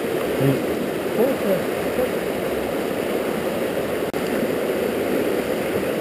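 Fast, high-running river rushing steadily over rocks and rapids, the water swollen with early-summer flow. Faint snatches of a voice come through about a second in.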